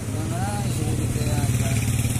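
Motorcycle loader rickshaw engine idling with a steady, low, evenly pulsing rumble.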